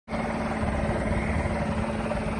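Small lawn-equipment engine running steadily at an even pitch.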